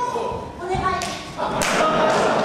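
A body thudding onto a pro-wrestling ring mat a little after half a second in, amid voices, followed by sharp smacks about a second in and again near the end.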